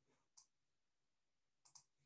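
Near silence with a few faint clicks: one at the start, one about half a second in, and a quick pair near the end.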